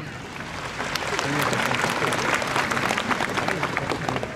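Audience clapping, building up about a second in into dense applause.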